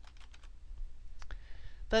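Computer keyboard keys clicking as a word is typed: a quick run of keystrokes in the first second, then two more key clicks a little over a second in.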